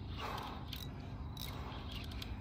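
Fishing reel working under the load of a large fish on the line: faint mechanical clicking and creaking from the reel as the rod is held bent.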